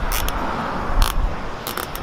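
Plastic zip tie being pulled through its ratchet to fasten a sign to a perforated metal post: a few short zips, the loudest about halfway through, over a steady low background noise.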